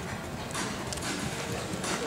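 Hoofbeats of a show-jumping horse cantering on sand arena footing.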